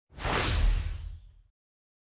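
A whoosh sound effect with a deep rumble underneath, swelling quickly and fading out over about a second and a half.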